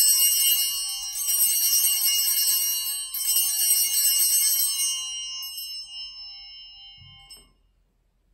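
Altar bells rung at the elevation of the chalice: a cluster of small high-pitched bells shaken in three rings, the second about a second in and the third about three seconds in, then the ringing fades away over several seconds.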